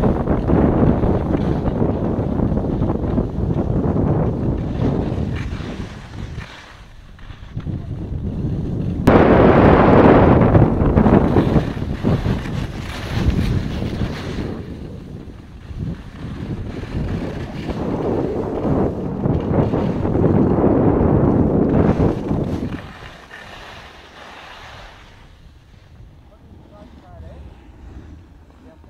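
Wind rushing over the camera's microphone on a ski slope, the noise swelling and fading in bouts, with a sudden louder stretch about nine seconds in, then much quieter near the end.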